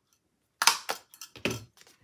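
A handheld single-hole punch crunching through a stack of paper sticker pages: one sharp crunch about half a second in, then a few shorter clicks and a duller knock as the punch springs back and the pages are handled.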